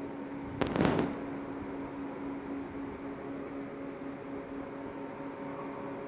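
Laboratory roller-type magnetic separator running, its electric drive motor giving a steady hum while the belt turns. A little over half a second in, a brief loud burst of noise cuts across the hum for under half a second.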